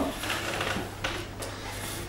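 Flour being scooped and handled in ceramic bowls: soft scraping and rustling with a few light ticks of a cup against the bowl, over a low steady hum.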